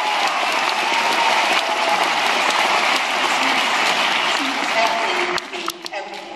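Audience applauding, with some voices mixed in; the clapping dies down about five seconds in.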